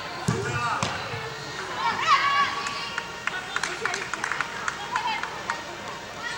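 High-pitched shouting voices of players and spectators at an indoor soccer game, echoing in a large hall, with a low thump just after the start and a quick run of sharp taps in the middle.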